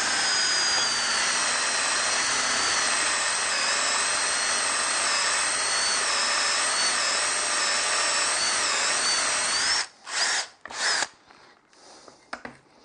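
Cordless drill boring with a 30 mm Forstner bit into a timber block: a steady run with a wavering whine for nearly ten seconds, then two short bursts before it stops. The hole is bored only until the bit's centre point just pokes through the far side, so it can be finished from the other face without tear-out.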